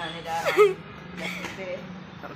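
A person's short, loud exclamation with a sharply falling pitch about half a second in, with talking voices around it.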